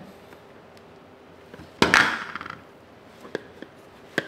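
Hand-handling of a plastic AeroPress Go and its mesh pouch: one sharp knock just under halfway through, followed by a brief rustle, then two light clicks near the end.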